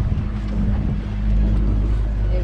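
A boat's motor humming steadily, with wind rumbling on the microphone that grows louder about a second in.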